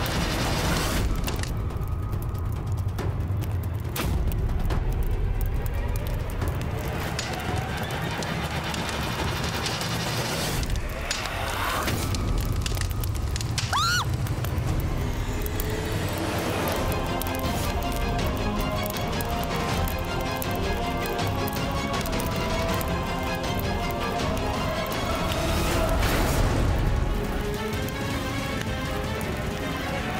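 Dramatic background score with a deep, continuous low end; from about halfway through, sustained held tones are layered over it.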